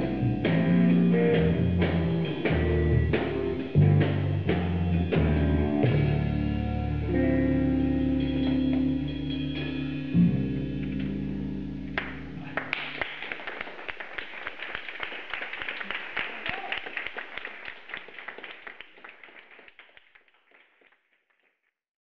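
Live instrumental band of electric guitar, bass guitar and drum kit playing the closing bars of a piece, ending on a long held chord. About halfway through the bass and drums drop out, leaving a quieter stretch of rapid ticks and higher ringing that fades out.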